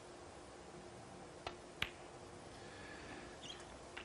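Two sharp clicks about a third of a second apart, the second louder: a snooker cue tip striking the cue ball, then the cue ball hitting the object ball. A few faint ticks of ball contact follow near the end.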